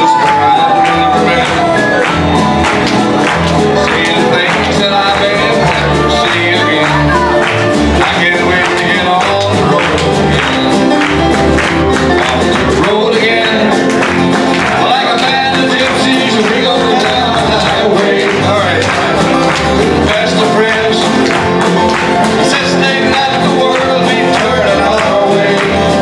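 Live acoustic folk band of strummed acoustic guitars, bass guitar, fiddle and drums playing an upbeat song with a steady beat, with voices singing along.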